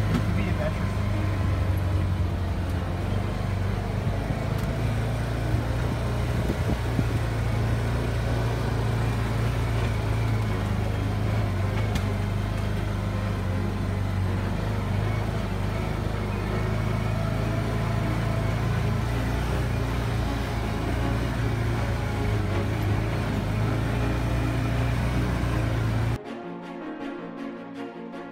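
Side-by-side UTV's engine running steadily while driving along a dirt trail, a constant low drone with rattle and wind noise, heard from the open cab.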